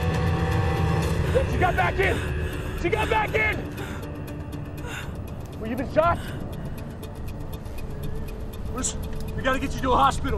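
Car engine and road noise inside a car being driven hard, a steady low rumble, with short voiced cries and exclamations, the loudest about six seconds in, over a film score.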